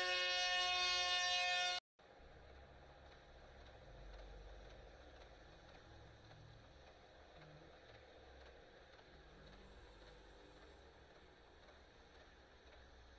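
Train horn sounding a steady chord that cuts off abruptly just under two seconds in. Then a faint, low rumble of a rotary snowplow throwing snow off the track.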